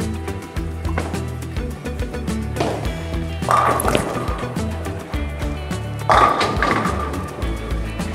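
Background music plays throughout. Over it, a bowling ball lands on the lane about three and a half seconds in and rolls, then strikes the pins with a crash about six seconds in, the loudest moment.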